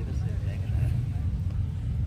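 Wind buffeting the phone's microphone outdoors: a steady, fluttering low rumble.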